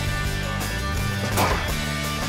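Background music with a steady bass line. About one and a half seconds in, a single sharp crack sounds under the music: a rifle shot fired live at the projected boar film.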